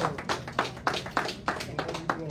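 Congregation clapping in a steady rhythm, about six claps a second, with a few voices under it.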